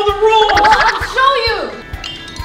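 Strained, wordless vocal grunts and groans from two people struggling over a drink can, over background music with a steady beat.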